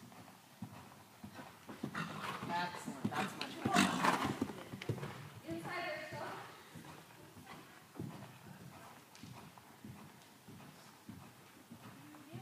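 Hoofbeats of a Friesian–Belgian cross mare moving on the sand footing of an indoor arena, a run of soft thuds that is loudest about four to six seconds in as she passes close by.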